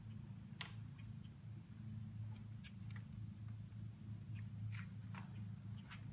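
Wooden kinetic sculpture turning slowly on its bearings, giving off irregular light clicks and ticks over a faint steady low hum.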